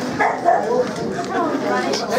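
Bull terrier barking and yipping over the chatter of people in the hall.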